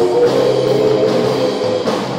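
Live band playing an instrumental passage of a praise song on electric guitars and drum kit.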